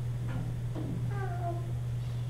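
A steady low hum, with a short meow-like vocal sound about a second in that falls in pitch.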